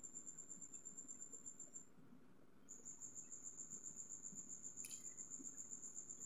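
Faint cricket chirping: a steady high-pitched trill of rapid pulses that stops for about a second near two seconds in, then starts again. A faint short click sounds about five seconds in.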